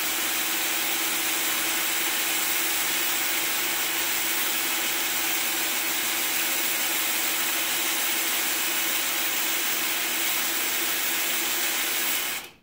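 Cordless drill running at a steady speed, driving the handwheel shaft of a rotary table on a surface grinder to turn the table round. It gives an even motor whine with a hiss that holds unchanged throughout.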